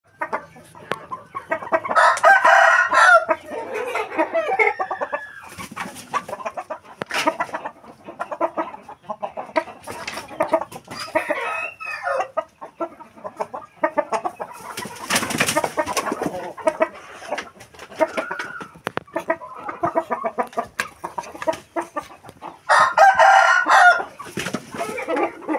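Pama chickens in a pen: hens clucking continually, with two loud, drawn-out calls, one about two seconds in and one near the end.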